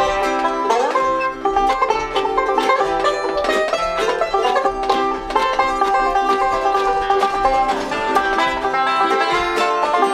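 A bluegrass string band playing live together: five-string banjo, acoustic guitar, mandolin and fiddle.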